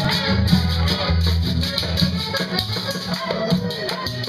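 Live vallenato music: a button accordion playing over a steady scraped rhythm from a metal guacharaca, with a deep bass line underneath.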